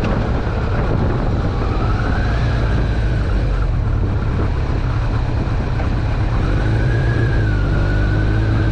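Carbureted Kawasaki ZRX1200R's inline-four engine running steadily under way, buried in heavy wind rush over the microphone.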